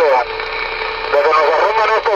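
A voice over a CB radio's speaker breaks off, leaving about a second of steady hiss on the channel. Then the voice comes back in.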